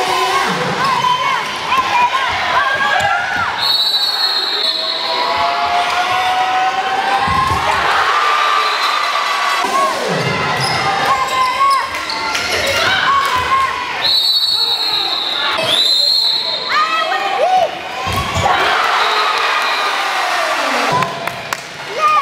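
Indoor handball game sounds: athletic shoes squeaking on the hardwood court and the ball thudding on the floor, with voices from players and spectators in the hall. A few short, shrill steady tones stand out about four seconds in and again around fourteen to sixteen seconds in.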